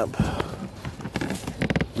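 Hands handling the car's trunk side trim and the wiring behind it: a string of light clicks and taps, with a quick run of clicks near the end.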